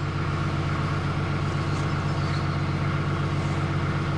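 Wide-beam canal boat's engine idling with a steady low hum, heard from the canopied helm.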